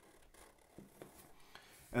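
Faint scratching of a Sharpie felt-tip marker drawing on paper, in a few short strokes.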